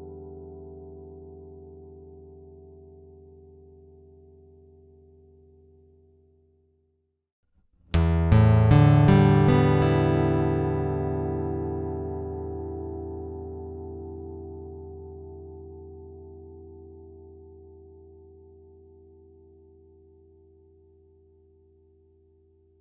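Electroacoustic guitar's open strings heard through its built-in piezo pickup. First the last of a previous sample fades out to silence. About 8 seconds in, six open strings are plucked one after another in about a second and a half, this time with a Planet Waves O-Port cone fitted in the soundhole, and they ring on, fading slowly.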